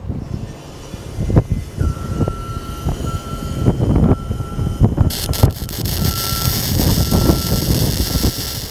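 Wind rumbling and buffeting on the microphone, then about five seconds in a flux-cored wire-feed welding arc strikes and runs with a steady crackle as a railing corner joint is welded.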